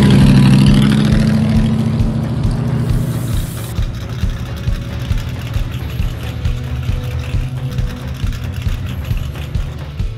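Off-road race truck engine running, loudest at the start and fading over the following seconds, under background music with a steady beat that carries on.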